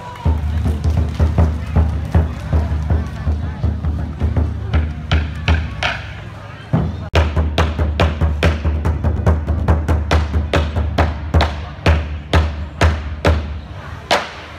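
Large traditional Vietnamese barrel drum beaten with sticks: fast runs of deep strikes with a sharp attack, a brief break about halfway, then slowing to single beats about two a second near the end.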